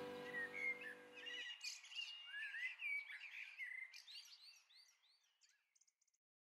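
Faint chirping and twittering of small birds, many short rising and falling calls that thin out and stop about four and a half seconds in. The last held low note of the music fades out beneath them about a second and a half in.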